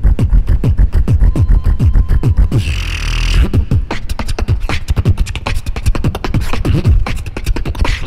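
Beatboxing into a handheld microphone, amplified over the stage sound system: a fast, dense rhythm of deep kick sounds that drop in pitch and sharp clicking snares, with a hissing burst about three seconds in.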